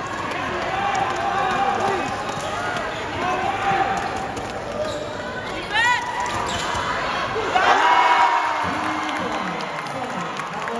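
Basketball game on an indoor court: ball bouncing and spectators talking, with a short high squeak of sneakers on the floor just before six seconds and a rise of crowd shouting around eight seconds.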